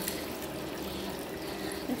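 Tap water running in a steady stream into a ceramic washbasin, splashing over hands being rinsed under it.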